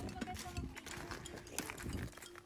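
Irregular light clicks and taps on pond ice, from skate blades and hockey sticks striking the frozen surface.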